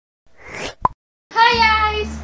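A short whoosh and a single sharp pop, then a young woman's voice drawing out one long high vowel that slides slightly down, over a low steady hum.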